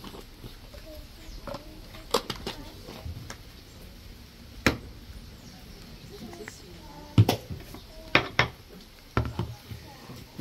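Scattered clicks and knocks of plastic jars, lids and small containers being picked up, opened and set down on a wooden table, with faint voices murmuring between them.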